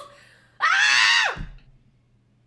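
A woman's short, high-pitched scream, under a second long, with its pitch dropping as it ends.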